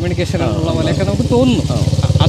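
A vehicle engine idling, a low steady throb that grows louder toward the end, under men talking.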